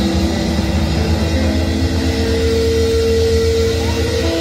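Distorted electric guitars droning with sustained feedback over a low bass rumble, without a clear beat. One note is held through the second half.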